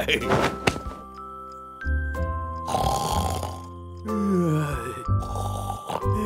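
Soft cartoon background music with sustained notes, mixed with a cartoon character's wordless vocal sounds: a breathy exhale about halfway through and a falling, sliding vocal sound a little later.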